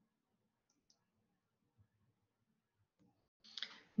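Near silence: faint room tone, with a short soft hiss near the end just before the voice comes back in.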